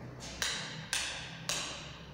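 Footsteps on a hard tiled floor in an empty room: three steps about half a second apart, each with a short echo.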